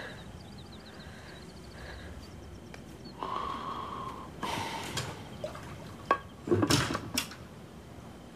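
Soft household sounds in a small room: faint chirping early on, a hiss about three seconds in, then a few sharp knocks and clinks of crockery near the end.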